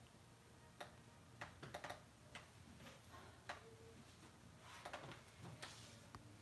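Near silence: room tone broken by a dozen or so faint, irregular clicks and taps.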